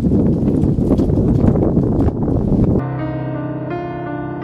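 Loud, rough outdoor noise with irregular clicks, cut off abruptly about three seconds in by slow, soft instrumental music of held notes.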